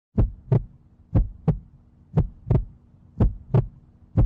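Heartbeat-style sound effect: four pairs of sharp thumps, lub-dub, about one pair a second, over a faint steady hum.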